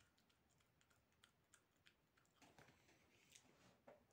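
Near silence with faint, scattered small clicks of a person chewing a bite of dry honey cake.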